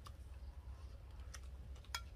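A few faint, sharp clicks of a metal spoon handled in a ceramic bowl, the loudest just before the end as the spoon knocks the bowl, over a low steady rumble.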